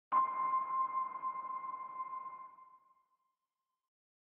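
A single sonar-like electronic ping: a steady high tone that starts suddenly, with a soft hiss under it, fading away over about two and a half seconds.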